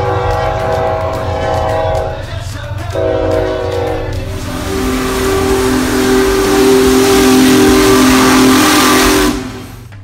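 A diesel locomotive's air horn sounds two chords, the second starting about three seconds in. Then a steam locomotive's whistle blows one long, lower chord over loud hissing steam, cutting off suddenly near the end.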